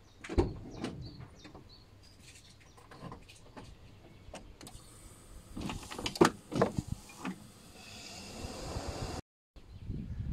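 Land Rover Freelander windscreen wipers running: scattered clicks, then from about halfway a steady motor whir with a few knocks as the arm sweeps. The sound cuts off sharply just before the end.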